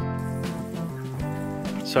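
Background music, a guitar track with held notes that change every fraction of a second; a man's voice starts right at the end.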